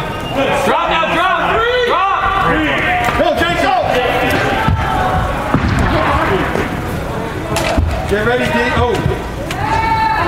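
Shouting voices of players and spectators ringing through a large indoor arena, with a few sharp knocks, lacrosse ball or sticks against the boards, about five, five and a half and nearly eight seconds in.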